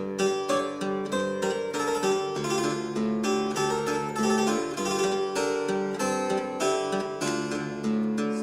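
A 1972 Frank Hubbard harpsichord, a copy of a Ruckers–Taskin ravalement, played with the buff stop drawn in combination with another set of strings, giving a plucked, lute-like tone. It plays a continuous stream of quick notes over a steady bass line.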